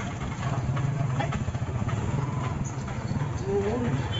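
Steady low running of small engines close by: a motorcycle riding just behind and auto-rickshaws in the street traffic. A voice is heard briefly near the end.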